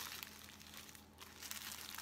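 Faint crinkling of a clear plastic gift bag as a hand lifts and shifts a wrapped bath bomb, with a few small scattered rustles.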